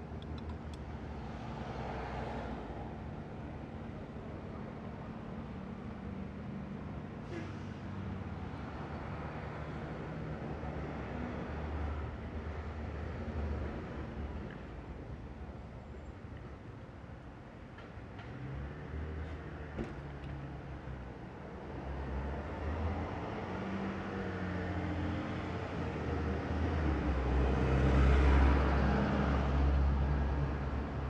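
Street traffic: cars running by with a steady low engine rumble, which swells to its loudest near the end as a vehicle passes close.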